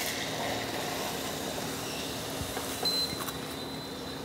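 Hot ghee in a nonstick kadhai sizzling as semolina (rava) is poured in, settling into a steady hiss that eases slightly, over the steady hum of an induction cooktop.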